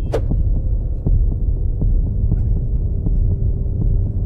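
Film-trailer sound design: a deep, steady rumbling drone with faint ticks, opening with a quick falling whoosh.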